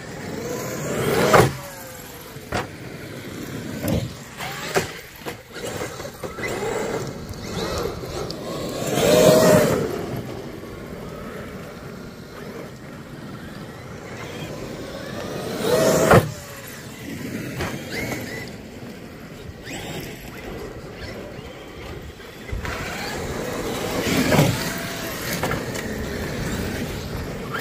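Traxxas X-Maxx RC monster trucks driving on gravel: the electric motors whine up and down in about four loud swells as the trucks accelerate and slow, over the crunch of tyres on gravel.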